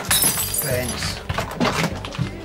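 A glass breaking: a sudden crash at the start, then shards tinkling for about half a second.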